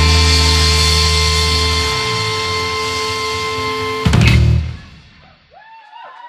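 Live rock band of electric guitars, bass and drum kit letting a final chord ring and slowly fade, then a last loud full-band hit about four seconds in that is cut short, ending the song.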